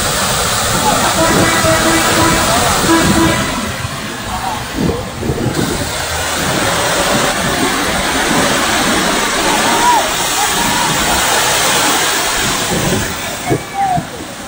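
Lembah Anai waterfall and river in flash flood (galodo): a loud, steady rush of muddy floodwater pouring down the falls and churning through the flooded channel, with a slight lull partway through.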